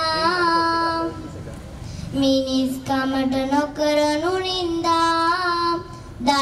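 A young girl singing a slow melody into a microphone, holding long notes that slide between pitches. She pauses for about a second after the first phrase, then sings on.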